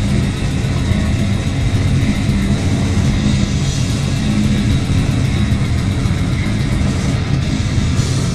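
Grindcore band playing live at full volume: distorted guitars and bass over fast, dense drumming with rapid, evenly spaced cymbal hits.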